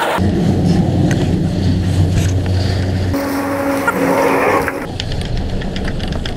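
Chairlift running as the chair carries its riders out of the loading station: a steady low rumble with light clicks and clatter from the chair and ski poles, and a brief humming tone from about three to five seconds in.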